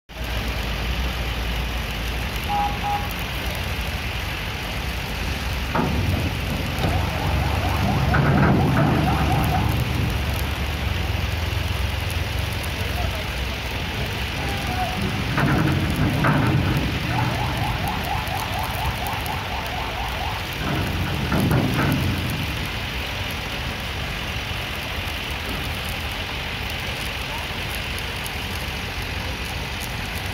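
Vehicles' engines running as cars drive off a ferry across a steel pontoon, with people's voices around. Louder swells come a few times, each with sharp clanks and a short pulsing tone like a horn.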